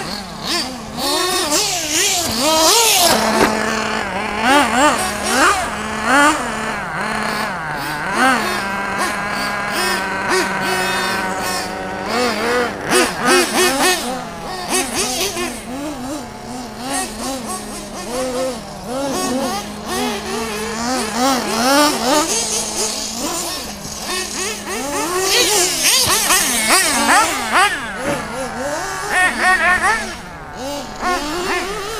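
Radio-controlled model cars' motors revving up and down as they race around a track, several pitches rising and falling over one another without a break.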